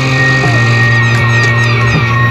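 Live instrumental black metal: heavily distorted electric guitars and bass holding a sustained, droning chord.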